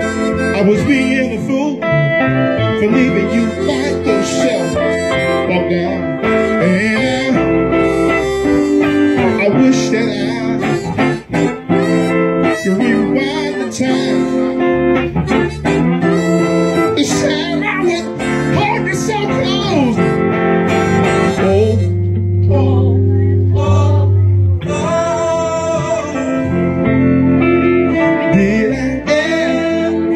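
Live blues band playing an instrumental break: acoustic guitars with a lead melody line over them.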